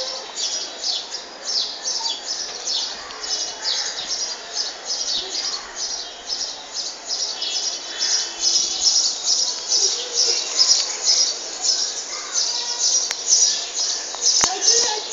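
Birds chirping: short, high chirps repeated evenly, about three a second.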